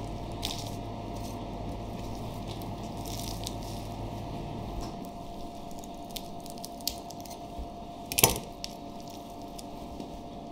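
A kitchen knife cutting and trimming a raw wagyu beef sirloin on a plastic cutting board: soft, wet squishing and scraping of the blade through fat and meat, with small clicks. One sharp knock about eight seconds in stands out, over a steady kitchen hum.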